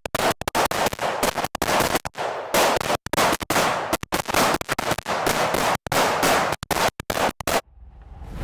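A semi-automatic rifle fired in fast strings of shots, several a second, with abrupt gaps between strings. It cuts off suddenly near the end.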